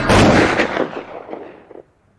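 A single loud blast at the end of a hip-hop track, dying away over nearly two seconds and then cutting off.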